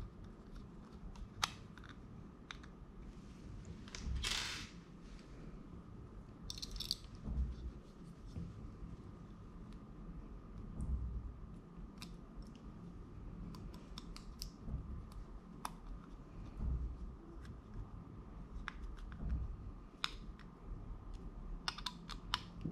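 Faint small clicks and scrapes of a screwdriver turning the screws that fix a metal mounting bracket to an AIO liquid cooler's pump head, with hand-handling noise. A short rustle comes about four seconds in and another near seven seconds.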